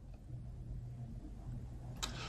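Quiet room tone with a faint, steady low hum and nothing else happening.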